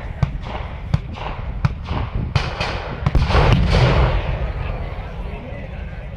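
Scattered blank gunfire, about four sharp single shots spaced well apart, then a loud blast about three seconds in, the loudest sound, dying away over a second or so: a battlefield pyrotechnic charge in a mock battle.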